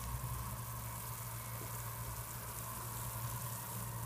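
A steel pot of water at the boil on a gas stove, a steady low hiss with a steady hum underneath.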